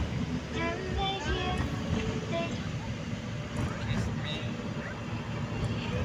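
Steady road and engine rumble of a moving car heard from inside the cabin. A voice talks briefly in the first couple of seconds and again faintly later.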